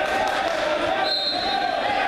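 Spectators' voices talking and shouting over one another in a gym, with a short, steady high whistle about a second in: the referee's whistle starting the wrestlers from the referee's position.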